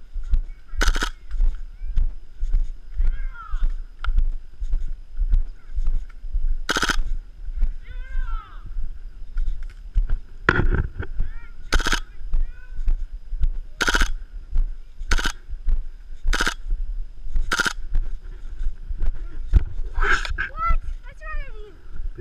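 Short bursts of full-auto fire from a KWA MP7 gas-blowback airsoft gun, about nine in all, spaced a second or more apart and coming more often in the second half. Footsteps on dry ground thud underneath, and faint shouting comes from a distance.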